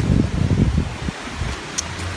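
Wind rumbling and buffeting on the microphone, with a light rustle, and a short click near the end.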